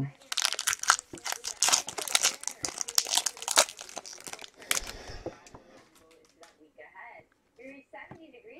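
Foil wrapper of a 2016 Infinity football card pack crinkling and tearing as it is pulled open, a dense crackle for about five seconds that then dies away.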